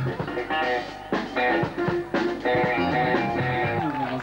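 Live jazz band playing: electric guitar lines over drums, with sharp drum and cymbal strikes.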